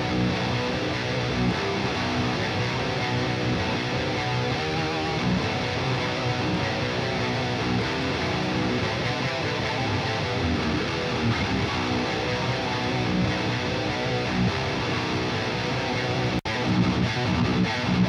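Distorted electric rhythm guitars playing a metal riff, played back from a mixing session, with a sharp momentary dropout near the end.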